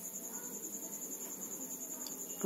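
A faint, continuous high-pitched pulsing trill, like an insect's.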